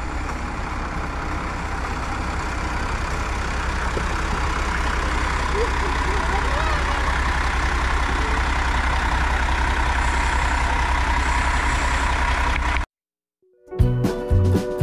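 Narrow-gauge diesel locomotive's engine running with a steady low rumble close by, growing slightly louder. It cuts off abruptly near the end, and music begins.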